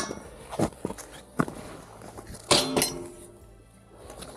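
Close handling noise: several sharp clinks and knocks, the loudest cluster about two and a half seconds in with a brief ring, then it dies away.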